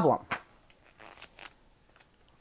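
A large picture-book page being turned by hand: brief, faint paper rustling.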